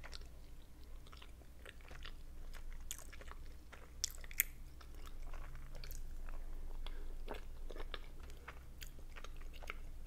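Close-miked ASMR eating sounds of a person biting and chewing soft boiled dumplings, a run of small mouth clicks with two sharper ones about four seconds in.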